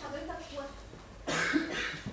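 A person's voice: a few short spoken sounds, then, about a second and a half in, a loud, harsh, cough-like vocal outburst lasting under a second.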